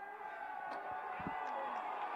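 Faint distant voices and a small, sparse stadium crowd, slowly growing louder as a penalty kick at goal is in the air.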